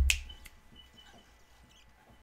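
A single sharp click over a low thump, about a tenth of a second in, then faint room tone with a few faint ticks.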